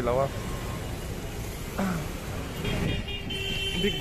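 Street traffic noise, with a short steady vehicle horn toot near the end.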